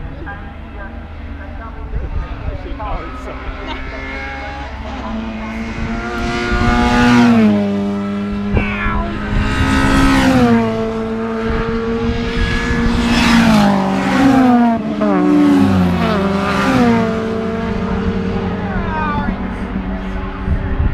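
Race cars passing at speed one after another, each engine note loud as it comes by and then dropping in pitch as it goes away; the loudest passes come about seven, ten, thirteen and sixteen seconds in.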